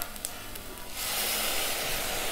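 Sautéed brinjal and onions sizzling in hot sesame oil, the sizzle rising about a second in as tomato puree is poured into the pot, then holding steady as a soft hiss.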